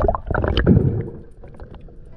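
Water sloshing and gurgling as heard through an underwater camera's housing, loud and churning in the first second, then settling to a quieter murmur.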